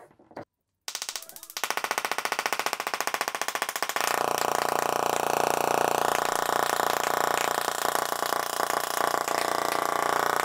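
Small tabletop Tesla coil (Tesla Coil 10 Max) sparking from its discharge needle: a loud, rapid electric buzz that starts about a second in, steps up in loudness twice, and then holds steady.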